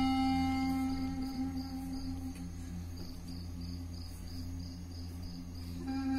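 Ambient background music: a long held low note with a high, regular chirping pulse about three times a second, which makes it sound like crickets. It grows quieter through the middle and swells again near the end.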